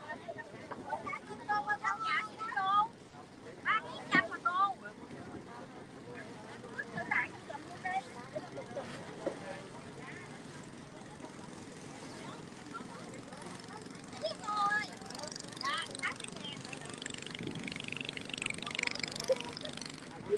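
A tour boat's engine running steadily as it moves along the river, with people's voices heard in short snatches over it.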